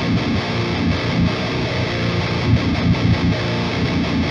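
A heavily distorted electric guitar playing a metal riff continuously, with a lot of low end. It runs through an amp simulator and a Barefoot cabinet impulse response: a Celestion Vintage 30 speaker in a 1x12 PRS cab, captured with a dynamic mic.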